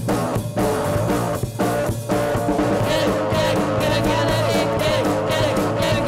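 Rock band playing live on electric bass, electric guitar and drums, with brief stops in the beat early on. A singer's voice comes in about halfway through.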